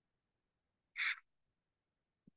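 A single short breath-like puff of noise about a second in, with silence around it.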